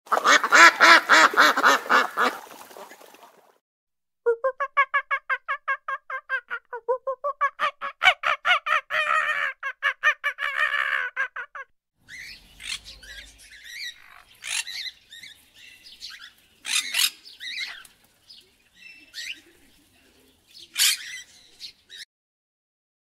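Ruddy shelducks giving rapid runs of honking calls for about the first twelve seconds, with a short pause about four seconds in. Then come a cockatoo's scattered short screeches, the loudest three a few seconds apart.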